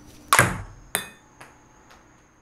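Ping pong ball hitting a hard surface with a sharp click that rings briefly, then bouncing three more times at about half-second gaps, each bounce fainter.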